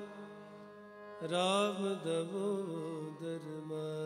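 Sikh kirtan: steady sustained harmonium-like drone, joined about a second in by a man's voice singing a long held line with a wavering vibrato.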